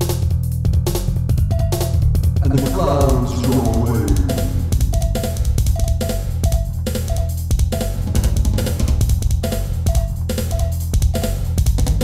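Synthesizer music over a drum beat and steady bass: a bending synth lead line about three seconds in, then a short staccato synth note repeating about twice a second.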